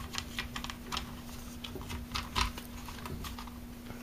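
Hard plastic engine cover of an Echo SRM-225 string trimmer being worked loose and lifted off by hand: a run of light, irregular plastic clicks and taps.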